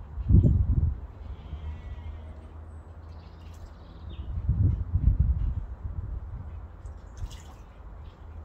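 Barn owl bathing in a shallow water dish, splashing and flapping its wings in two bursts: one about half a second in, the other around five seconds in.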